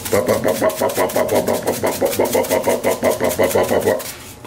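Seasoning shaken from a container over a bowl of raw chicken: a fast, even rattling rhythm of short shakes.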